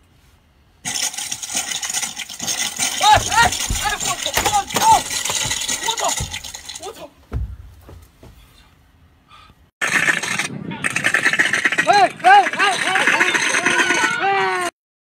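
Crackling, splintering glass sound of a glass-bridge floor's simulated cracking effect, set off under a walker's feet, with short high-pitched frightened cries over it. It stops for a few seconds and then comes again with more cries.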